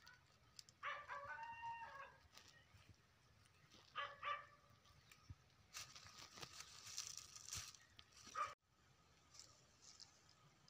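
A faint rooster crowing once, about a second in, with two short calls a few seconds later. A few seconds of rustling noise follow near the end.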